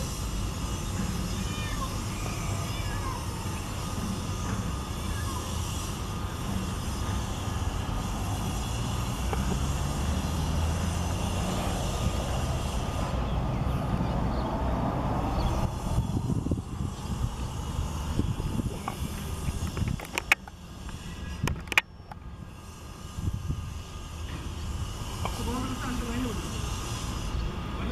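Faint, indistinct distant voices over a steady low rumble. Near the end come two sharp knocks about a second and a half apart.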